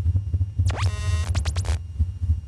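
Film soundtrack: a loud, deep throbbing rumble, with a cluster of shrill screeching tones that sweep quickly up and down in pitch from about half a second in, lasting about a second.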